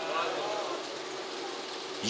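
A pause in the speech, filled by a steady low background hum with a faint voice in the first second.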